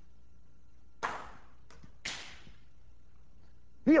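A golf-ball projectile launcher firing, heard as a sudden short burst of noise about a second in. A second short noisy sound follows about a second later.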